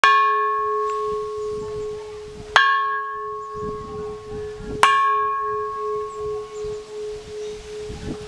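Bronze Burmese temple bell struck three times from outside with a wooden pole, about two seconds apart. Each strike rings on, and the bell's deep hum carries on between strikes.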